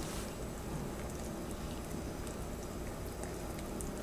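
Balloon whisk stirring flour into a wet bread batter in a glass bowl: a steady, soft stirring noise with faint scattered clicks.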